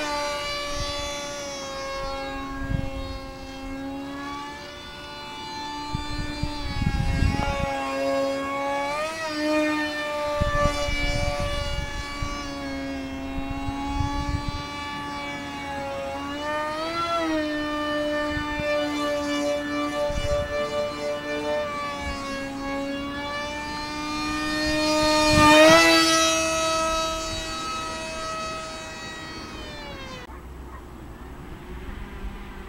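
Electric motor of a small foam RC jet whining in flight, its pitch rising and falling with throttle. It grows loud as the plane passes close about 26 seconds in, the pitch swinging up and then dropping as it goes by. Gusts of wind rumble on the microphone now and then.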